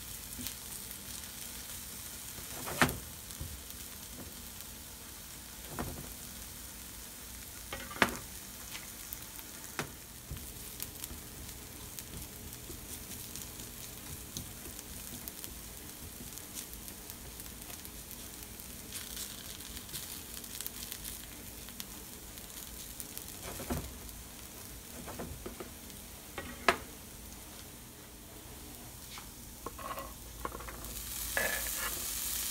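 Sliced red onions and garlic sizzling steadily in butter in a nonstick frying pan, stirred with a silicone spatula that gives a few short sharp knocks against the pan.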